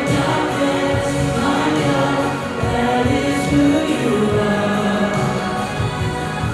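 Two women singing a Christian worship song together into microphones, with held, sustained notes.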